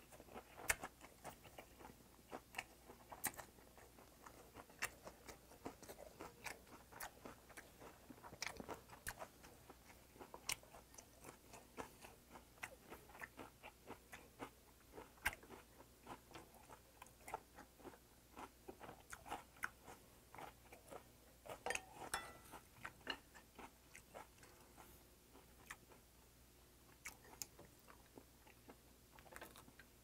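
A person chewing a mouthful of steamed pumpkin-leaf rice wrap close to the microphone: faint, irregular wet chewing clicks and smacks, with a louder flurry about two-thirds of the way through.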